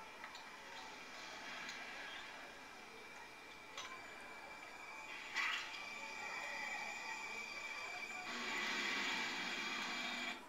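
Horror film opening-title soundtrack played through classroom wall speakers: eerie held synth tones, with a sharp hit about five seconds in and a louder swell near the end as the title appears.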